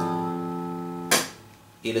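Electronic keyboard sounding a sustained low note that stops about a second in with a sharp click.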